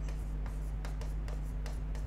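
Marker pen writing on a board: soft scratching in short strokes, over a steady low hum.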